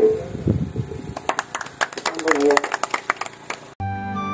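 Scattered handclaps from a small group, sharp and irregular, with a short voice in the middle. About three and a half seconds in, the sound cuts abruptly to music.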